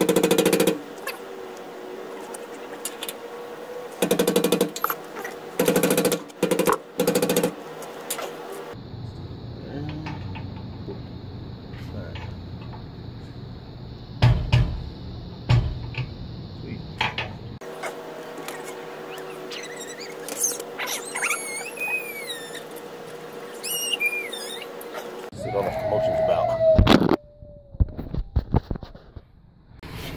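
Short bursts of metal clanking and scraping as hand tools work the bow stop on a boat trailer's winch stand. There are several separate bursts in the first few seconds and a few knocks later. Birds chirp in a later stretch, and near the end a young child cries out loudly.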